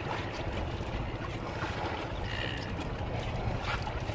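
A small motorboat's engine running steadily, a fast even low pulsing under a wash of wind and sea noise.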